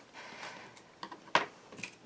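Light handling noise, then a single sharp clack about a second and a half in as a pair of plastic-handled scissors is set down on a wooden tabletop, with a few smaller taps around it.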